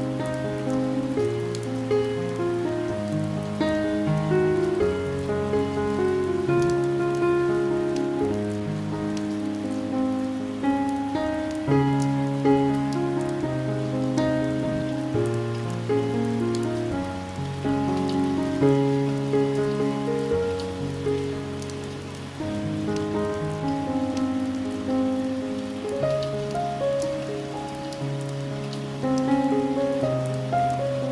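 Slow, soft piano music, a few held notes changing every second or two, over steady rain pattering on a window pane.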